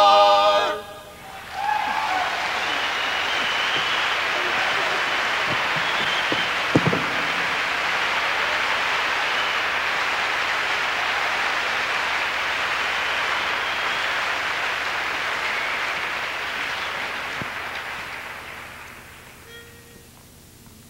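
A barbershop quartet's final a cappella chord, four male voices, cuts off within the first second. Audience applause then starts and runs steadily before fading out over the last few seconds.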